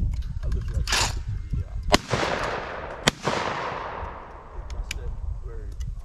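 Shotgun fired twice at a thrown clay target, about a second apart, the first report trailing off in a long rolling echo.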